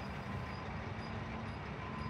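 Asphalt paver running: a steady low machinery drone with a faint steady hum on top.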